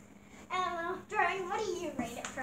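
A young girl singing in a high, sing-song voice, in two short phrases starting about half a second in.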